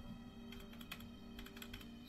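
Faint, irregular light clicks, a dozen or so, over a low steady hum.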